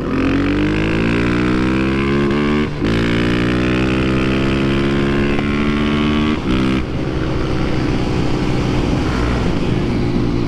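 Honda CB300F Twister's single-cylinder engine, fitted with a performance camshaft, pulling hard under full acceleration, heard from the rider's seat with wind rush. The engine note climbs, drops briefly at about three seconds for an upshift, climbs again, and shifts once more a little past six seconds.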